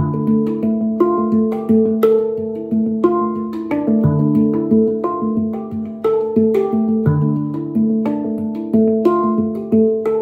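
Handpan (hang drum) played with the fingers: a flowing run of struck metal notes, several a second, each ringing on and overlapping the next. A deep note comes back about every three seconds beneath the higher ones.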